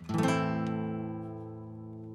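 Nylon-string classical guitar strummed once on an A minor chord, left to ring and slowly die away.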